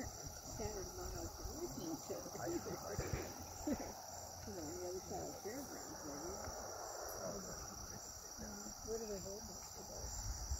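Steady high-pitched insect chorus, crickets in the field grass, with faint murmured voices underneath.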